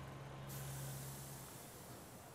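A city bus releasing compressed air: a sudden hiss about half a second in that fades over about a second, over a low steady hum that stops shortly after.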